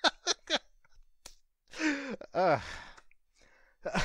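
A man's laughter dying down: three quick bursts of laughter, then a long sigh and a short murmured "uh" about halfway through.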